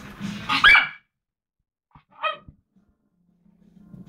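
Miniature Schnauzer puppy barking twice: a sharp bark about half a second in, then a second, shorter bark about two seconds in.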